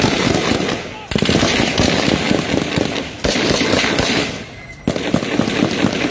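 Rapid gunfire: many sharp shots in quick succession, with short lulls about a second in and again shortly before the end.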